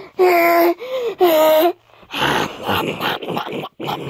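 A child's voice making pretend eating noises for a stuffed toy: two held, even-pitched hums with a short higher one between them, then about two seconds of rough, breathy sounds.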